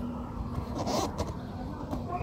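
Hand rubbing and pressing foil-backed waterproofing tape down onto a corrugated steel roof sheet, with a brief scuffing rustle about a second in and a few light clicks. Underneath is a steady low rumble.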